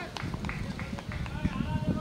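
Raised human voices calling out in short calls, with a few short ticks in the first second.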